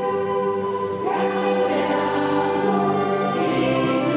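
Mixed choir of teenage students singing, holding long notes, with a fuller entry about a second in.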